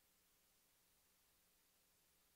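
Near silence: faint steady hiss with a low hum.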